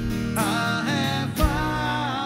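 A man singing live over a strummed acoustic guitar, his voice entering about half a second in with sliding pitch, and a low thump on the beat twice, from the one-man band's foot percussion.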